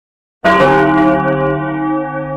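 A single deep bell-like tone, struck about half a second in and ringing on, slowly fading.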